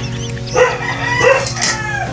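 A drawn-out animal call, pitched and wavering, that falls away near the end, over a steady low hum.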